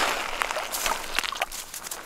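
A bluegill pulled up through an ice hole thrashing on wet snow and ice, with crunching and scuffling as it is landed by hand: a rush of crunchy noise at the start, then a few separate sharp slaps and clicks.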